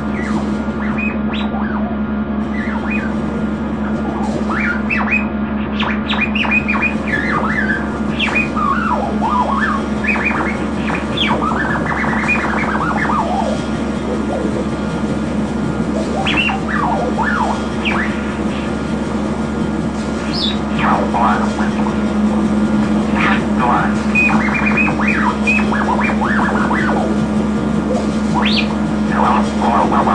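Experimental drone music: a steady low hum underneath scattered short squeaking and chirping glides that rise and fall irregularly, thickest in two clusters, early and late.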